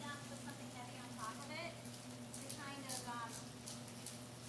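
Faint, indistinct talking over a steady low hum.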